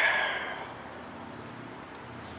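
A breathy exhale fading out over the first half second, then quiet background with a faint low hum.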